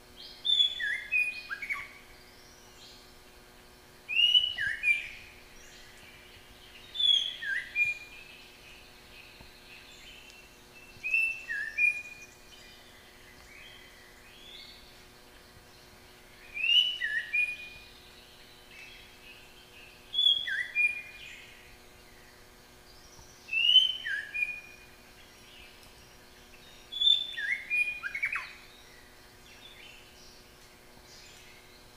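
A songbird repeating the same short song phrase of a few quick whistled notes, each dropping in pitch, about every three to five seconds, eight times in all.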